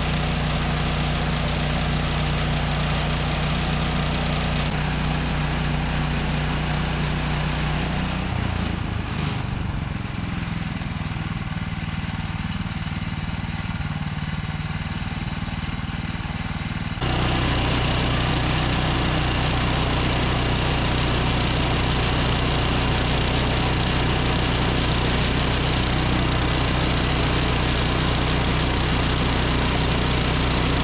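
The 14 hp gas engine of a Woodland Mills HM126 portable bandsaw mill running steadily. A little over a quarter of the way through, its pitch drops and it runs lower. About halfway through, the sound jumps straight to a louder steady run as the band blade cuts a board from the cherry log.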